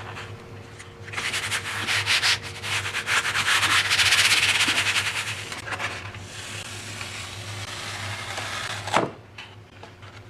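A hand rubbing the back of a sheet of printmaking paper laid over an inked Gel Press gelatin-style printing plate, rapid dry back-and-forth strokes that burnish the paint onto the paper to pull a monoprint. The rubbing is loudest in the middle and stops with a short sharp sound near the end.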